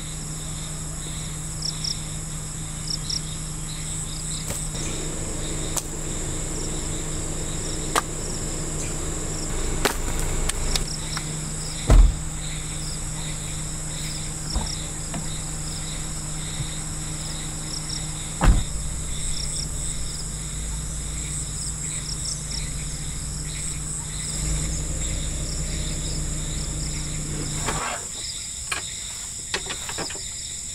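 Insects chirping steadily in high, pulsing tones, with a low steady hum underneath. A few knocks and thumps from gear being handled at the vehicle, the two loudest in the middle.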